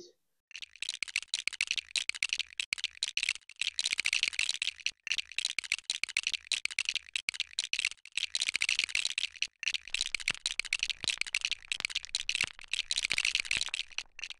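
Screwdriver unscrewing screws from the metal FarDriver motor-controller housing: a dense run of quick clicks and rattles, with a few short breaks.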